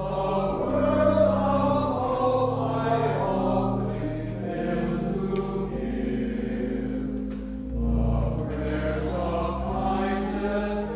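A choir and congregation singing a hymn to organ accompaniment, the organ's held chords changing about once a second under the voices.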